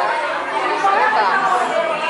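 Speech: women chatting, with crowd chatter of a large indoor public space behind.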